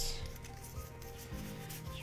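Soft rubbing and sliding of Pokémon trading cards against one another as a pack's worth of cards is fanned and sorted by hand.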